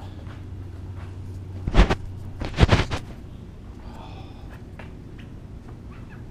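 Two loud knocks or clunks a little under a second apart, the second longer, over a steady low hum.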